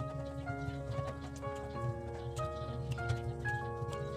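Background music: a melody of held notes changing every third to half second over a steady low accompaniment with light ticking percussion.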